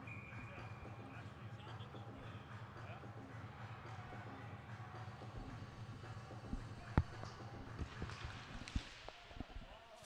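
Ice hockey arena at a faceoff: crowd murmur over a low steady hum, then a sharp crack of stick and puck about seven seconds in as the puck is dropped, followed by scattered clacks of sticks, puck and skates on the ice.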